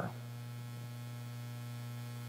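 A steady low hum, with no other sound.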